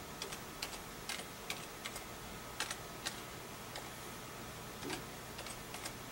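Computer keyboard being typed on: single keystrokes clicking at an uneven pace, about two a second, over a faint steady hum.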